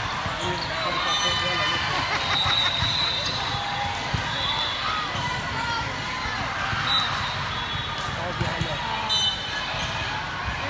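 Busy volleyball gym ambience: many voices talking and calling out at once, with balls thumping on the hardwood floor and short high sneaker squeaks.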